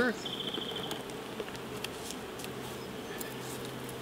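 Honey bees buzzing around open hive boxes, a steady low hum.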